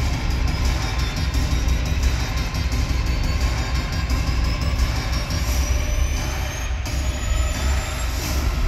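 Pregame intro soundtrack played loud over an arena PA system, with heavy bass and a rising whine that builds through the second half.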